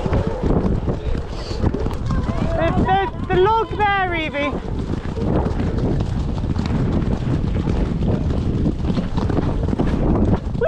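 Wind buffeting the microphone of a camera on a cantering horse, over the drumming of hooves on grass. About three seconds in, a brief wavering call rises and falls for a second or two.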